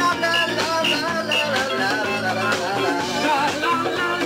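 A live disco band playing through a PA, with a steady beat under a melody line.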